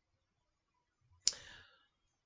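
A single sharp mouth click about a second in, followed by a short hissy breath in through the mouth.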